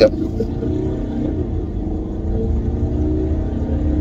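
Steady low rumble of engine and road noise inside the cabin of a 2018 Land Rover Discovery Sport on the move, with a faint hum that slides gently in pitch.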